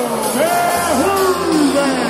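Arena sound system playing music with a drawn-out, gliding amplified voice over it, echoing through the large hall.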